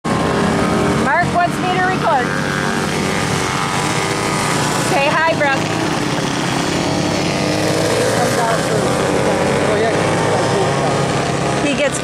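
Small racing engines running steadily as several small race vehicles lap a dirt track. Voices break in briefly about a second in and again about five seconds in.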